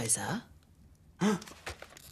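A voice sighing: a drawn-out sound that falls in pitch and fades within the first half second. A single short vocal sound follows about a second and a quarter in.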